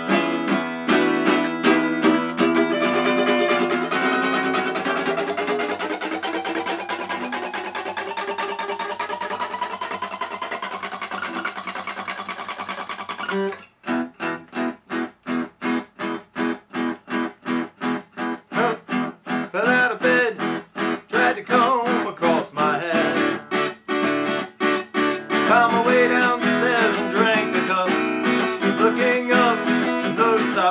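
Acoustic guitar strummed continuously, its chords climbing steadily in pitch up a chromatic scale of major chords. About 13 seconds in this stops abruptly and gives way to short, choppy strums with brief gaps between them, in a steady rhythm.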